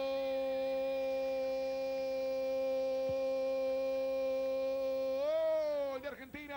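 A male football commentator's long drawn-out goal cry, "goooool", held on one steady note for about six seconds, then swelling and bending up in pitch near the end before falling away.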